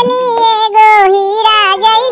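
A high-pitched voice singing a Chhath devotional folk song, with one long drawn-out note through most of it, over a quieter musical accompaniment.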